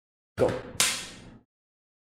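The word 'go', then a single sharp smack about a second in that dies away within about half a second.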